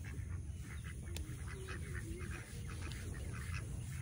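Ducks quacking faintly in the distance, in short, repeated calls, over a low steady rumble.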